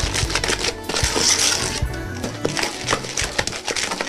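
Background music over a wooden spoon beating a stiff mixture of margarine and sugar in a metal bowl, a run of quick clacks and scrapes.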